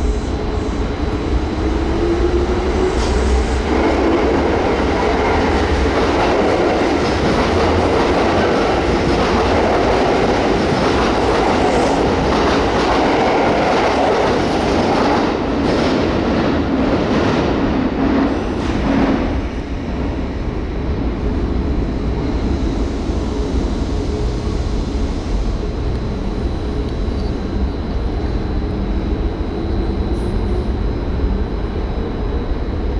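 A Kintetsu 21000 series Urban Liner Plus electric train pulling out of an underground station: a rising motor tone as it gets under way, then loud running and rail noise with wheel clicks that drops off suddenly about two-thirds of the way through. A quieter, steady train rumble follows.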